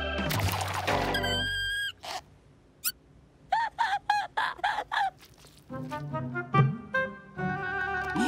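Cartoon soundtrack: music ending in a short held tone about two seconds in, then a string of about six short chirping calls, then music again.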